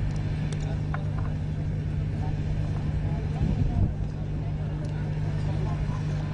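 A steady low hum throughout, with faint distant voices and a few light clicks.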